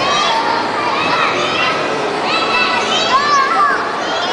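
Young children playing and calling out, high-pitched voices rising and falling over a steady hubbub of other voices.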